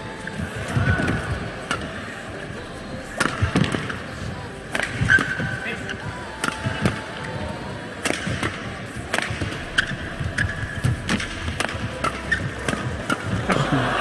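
Badminton doubles rally: rackets striking the shuttlecock back and forth with a dozen or so sharp hits at irregular intervals, with brief shoe squeaks on the court over a steady arena crowd hum.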